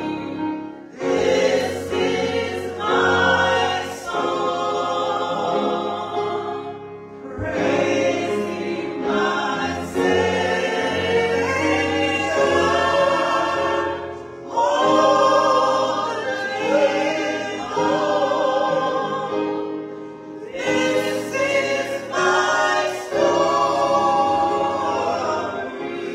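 Small mixed church choir singing a gospel song in harmony, in long sustained phrases with brief breaks between them.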